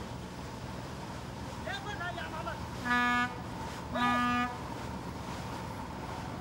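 A boat's horn sounding two short blasts about a second apart, over a steady low engine hum from the small craft under way.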